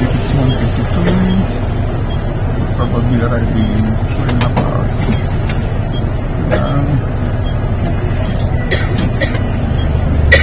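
Bus engine running with a steady low rumble, with indistinct voices and a few light clicks over it.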